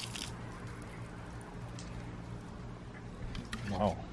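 Water poured from a plastic filter housing splashing onto grass, trailing off and stopping about a third of a second in. After that only a faint low steady hum and a few light clicks of the housing being handled, with a brief voice just before the end.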